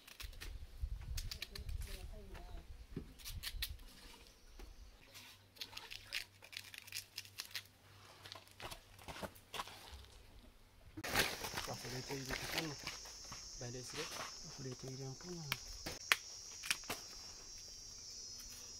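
Kitchen knife peeling fresh cassava roots by hand, with a run of short clicks and scrapes as the blade works the thick peel. About eleven seconds in, a steady high insect chirring starts and runs on, with more knife clicks.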